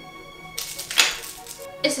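Background music, with a short crinkle of a small plastic package being handled and opened for about half a second, a little after the start.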